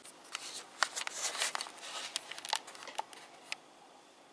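Handling noises: irregular rustling and light clicks, scattered over about three and a half seconds, then quiet room tone.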